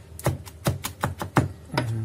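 Kitchen knife chopping fresh rosemary and thyme on a wooden cutting board: a rapid, slightly uneven run of blade knocks on the wood, about six a second.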